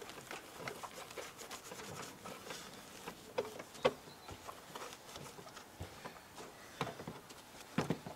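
Wet cloth wiping and rubbing over the sides of a metal-framed fishing seat box, with scattered light taps and a few sharper knocks as the box is handled.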